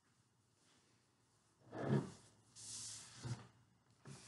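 Quiet handling sounds from a glass jar of soil and a cloth towel being cleaned up: a dull knock about two seconds in, a short rustle of cloth, then a second, smaller knock.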